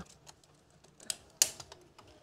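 A few light, sharp clicks, the loudest about one and a half seconds in, from handling a small retractable cloth tape measure while wrapping it around a wooden stool leg.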